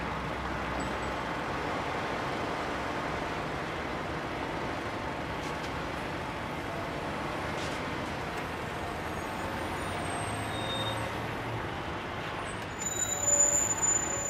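Grab lorry's diesel engine running steadily, heard as a constant noisy hum with street noise. The sound turns busier and uneven near the end.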